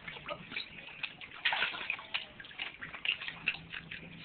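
Water splashing and dripping in a shallow pool as corgis move about in it: irregular small splashes and drips, with a louder cluster of splashes about one and a half seconds in.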